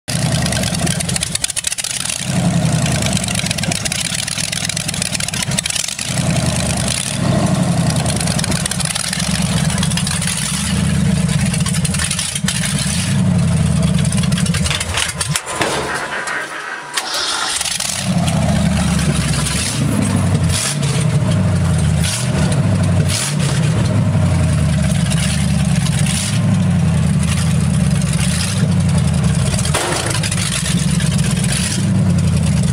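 The engine of a 1950 Ford F1 rat rod truck running with an uneven, pulsing low rumble. Its sound drops away briefly about halfway through, then picks up again.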